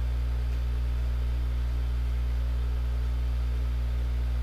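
Steady low electrical hum with a faint even hiss in the microphone signal, unchanging throughout; no other sound stands out.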